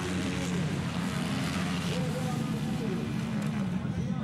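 230cc off-road motorcycle engines running and revving, the pitch rising and falling as the riders work the throttle around a dirt track; voices can be heard alongside.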